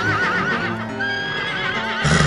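Horses whinnying twice over background music: each whinny is a held high note that breaks into a quavering wobble, the second starting about a second in.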